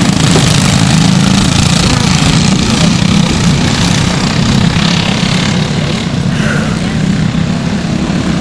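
Several Briggs & Stratton LO206 single-cylinder four-stroke kart engines running together under racing load, blending into one steady drone.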